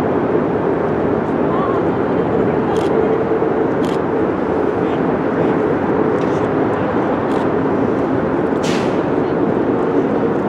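Passenger train rolling across a distant bridge, a steady even running noise with a few brief high clicks around three, four and nine seconds in.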